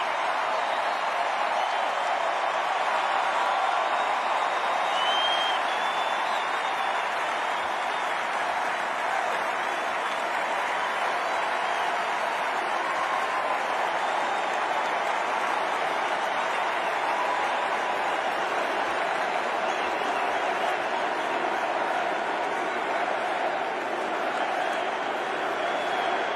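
Large stadium crowd cheering and applauding steadily, with a couple of short whistles near the start and about five seconds in.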